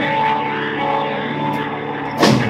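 Electric guitar and bass of a live rock band holding a steady, droning chord in a song's intro.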